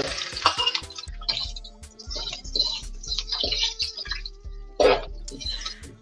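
Chopped onions sizzling as they go into hot oil in an aluminium pot, with the clicks of a spoon stirring them, over background music.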